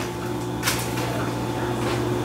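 Steady low hum of a running appliance. A brief rustle comes about two-thirds of a second in, and a light handling noise near the end as hands take hold of the ceramic salad bowl.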